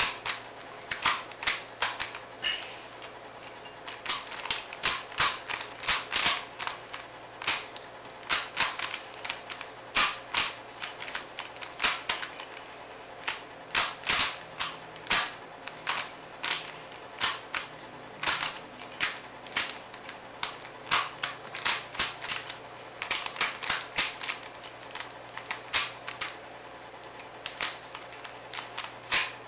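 Rubik's cube being turned quickly during a speedsolve: runs of sharp plastic clicks and clacks as the layers snap round, broken by short pauses.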